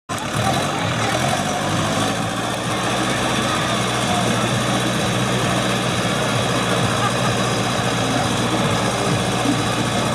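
Deutz-Fahr Agrolux 60 tractor's diesel engine running steadily under load as it pulls a Lemken plough through the soil.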